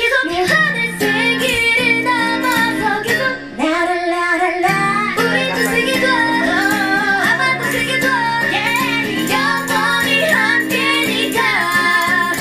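A woman singing a pop song over acoustic guitar, in an acoustic cover. The guitar drops out briefly about four seconds in while the voice holds a note.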